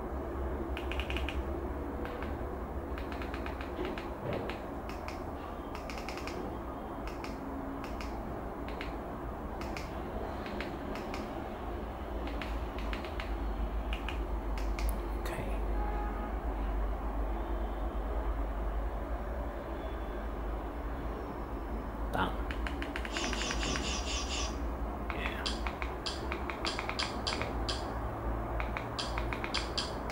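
A run of short keypress clicks as a Wi-Fi passphrase is entered on an on-screen keyboard, coming thick and fast about three-quarters of the way through, over a low steady hum.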